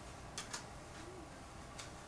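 Faint clicks of a plastic CD jewel case being opened and the disc lifted out: two sharp clicks close together about half a second in, and a softer one near the end.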